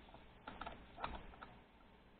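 Faint handling noise: a few soft clicks and creaks as the plastic monitor of a digital microscope is gripped and moved, about half a second and a second in.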